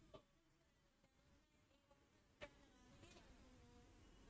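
Near silence: faint room tone, with one soft tick about two and a half seconds in.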